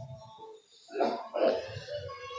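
A person clearing their throat: two short rough bursts about half a second apart.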